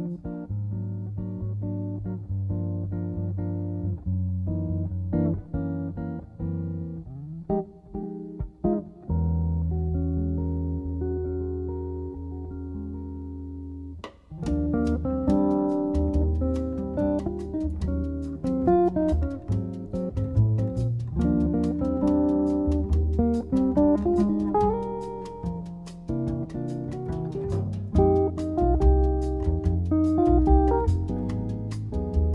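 Jazz guitar playing a chord-melody ballad, with sustained chords and single-note lines. About fourteen seconds in, a rhythm section joins and the playing grows fuller and busier.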